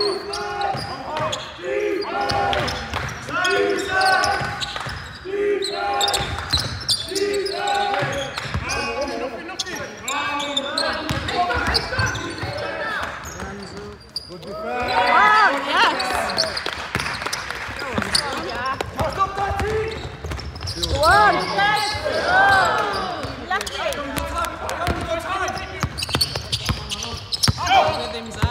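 Basketball game on a wooden sports-hall floor: the ball bouncing as it is dribbled, players calling out, and trainers squeaking on the court, with sharp sliding squeaks clustered about halfway through and again near the end.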